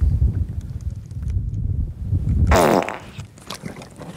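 Dubbed-in fart sound effects: a low, rough rumble that ends about two and a half seconds in with a short squeak falling in pitch.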